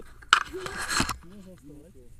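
A sharp knock followed by about a second of rustling, scraping noise as a tandem paraglider pair lands and slides seated across the grass, with brief vocal sounds near the end.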